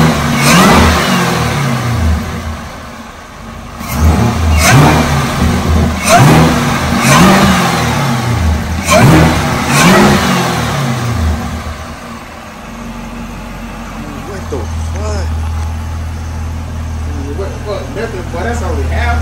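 Supercharged 6.2-litre LT4 V8 of a 6th-gen Camaro ZL1, breathing through a Roto-Fab cold air intake, revved in about seven quick blips that each climb and fall back. It then settles into a steady idle for the last few seconds.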